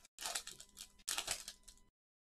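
Foil wrapper of a trading-card pack crinkling in several short bursts as it is torn open and the cards are slid out. The sound cuts off abruptly near the end.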